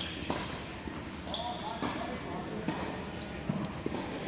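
Tennis balls bouncing and being struck by rackets in a large indoor tennis hall: a scattered series of short knocks, with voices in the background.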